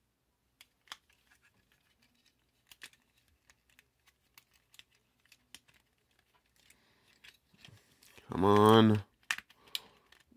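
Light, scattered clicks and taps of hard plastic parts as a Transformers Kingdom Rhinox action figure is twisted and snapped through its transformation by hand. About eight seconds in, a short voiced sound from the man handling it.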